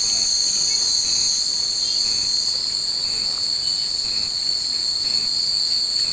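Cicadas buzzing in a loud, steady, high-pitched drone that shifts slightly higher about a second and a half in.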